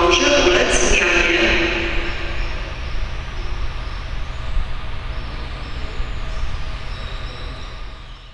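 A station public-address announcement in Polish, echoing across the platform, ends about two seconds in. After it a steady low rumble and hiss of platform background noise remains, slowly getting quieter.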